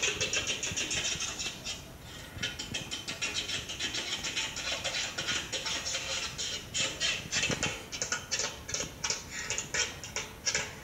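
A child's tap shoes clicking on a hard floor in rapid, uneven runs of taps, several a second.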